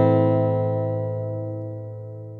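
A final strummed chord on an acoustic guitar, ringing out and slowly fading away.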